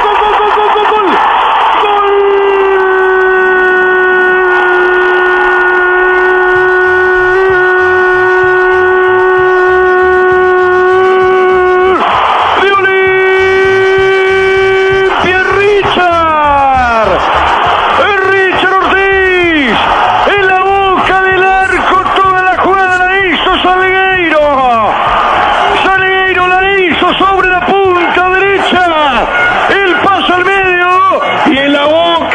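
A radio play-by-play commentator's goal cry, heard through the narrow sound of an FM broadcast. One long "goool" is held on a single note for about ten seconds, then taken up again briefly. After that comes a string of shorter shouts, each falling in pitch.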